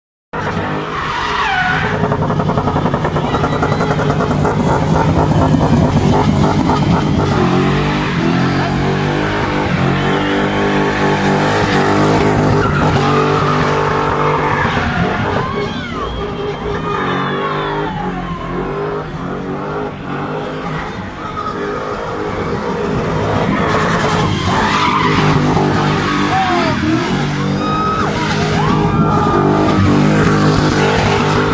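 Box-shape BMW E30 3 Series spinning: engine held at high revs, rising and falling, while the rear tyres squeal against the tarmac.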